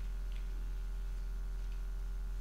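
Steady low electrical hum, with two faint ticks, one about a third of a second in and one near the end.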